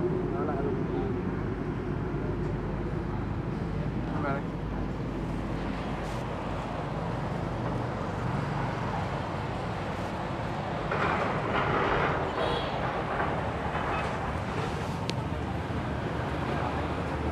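Roadside street ambience: a steady low hum of traffic with indistinct voices, louder for a moment about eleven seconds in.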